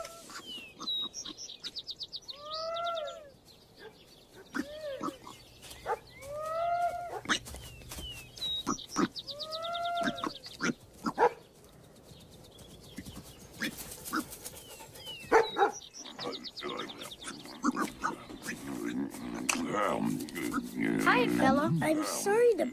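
Farmyard animal calls: a series of short calls that rise and fall in pitch, repeated every couple of seconds, with high rapid chirping and scattered clicks. A denser, louder low sound builds near the end.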